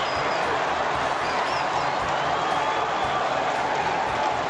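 Large ballpark crowd cheering and clapping steadily in celebration of a home run.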